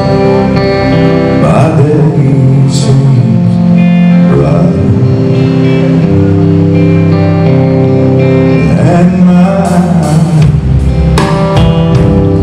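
A live gospel song led by electric guitar, with a man singing.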